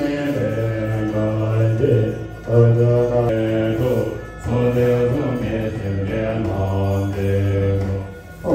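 Buddhist monks chanting a prayer, deep male voices holding long, steady notes, with short breaks for breath about two and a half and four and a half seconds in.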